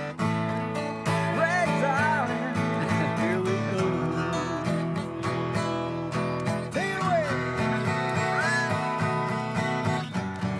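Two acoustic guitars strummed together in a country-style tune, with a few sliding higher notes over the chords.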